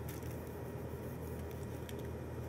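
Steady low hum of room background noise, with one faint click near the end.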